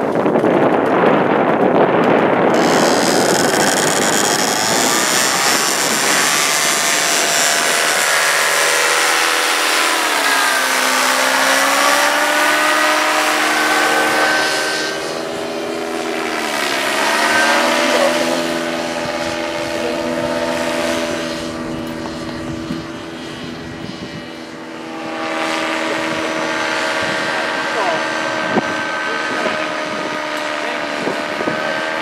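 Paramotor engine and propeller run at full power for a foot-launched takeoff, a loud roar that settles into a steady pitched drone as the craft climbs away. The pitch of the drone dips and recovers twice.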